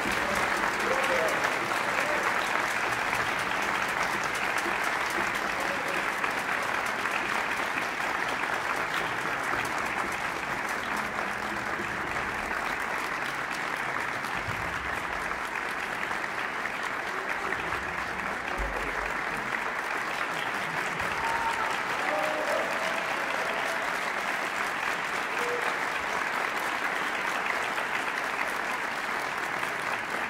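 Large audience applauding: dense, steady clapping at an even level.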